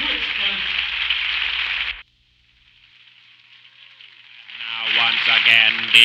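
Studio audience applauding and cheering, cut off suddenly about two seconds in. After a moment of silence, crowd noise fades back up and a man's voice comes in near the end.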